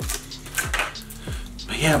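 Foil Pokémon booster pack wrappers crinkling and rustling as they are handled, over background music with a bass note that falls in pitch about twice a second.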